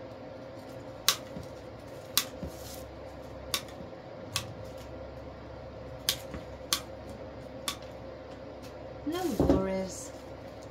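Sharp snips of cutters through the wired stems of artificial flowers, about seven in all and spaced irregularly, over a faint steady hum. A short vocal sound comes near the end.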